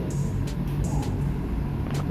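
Commercial 15 kg tumble drier running, a steady low machine hum with a few faint light ticks.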